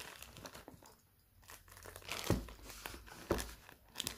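A plastic courier mailer bag crinkling and rustling as it is handled and slit open with a utility knife. It goes briefly quiet about a second in, and there are two sharper knocks later on.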